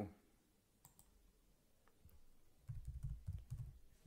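Laptop keyboard typing: a quick, irregular run of soft, low keystrokes in the last second and a half, with a couple of faint clicks about a second in.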